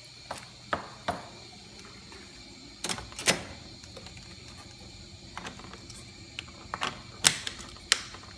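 Scattered plastic clicks and knocks, a cluster about three seconds in and the sharpest one near the end: a flexible endoscope's connector being pushed into the socket of an Olympus EVIS EXERA III light source and its cable handled.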